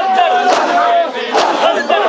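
Crowd of Shia mourners performing matam: many men shouting together, with one long held cry through the first second. A few sharp slaps of hands striking bare chests come through it.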